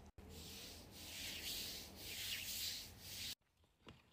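Hand rubbing powder over the bare skin of a leg, a dry scraping rub that swells in about three strokes and then cuts off suddenly a little over three seconds in.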